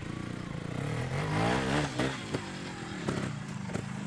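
Montesa trials motorcycle engine running at low revs, opened up in a short rising rev about a second in and easing back off. A few sharp knocks and clatters follow in the second half.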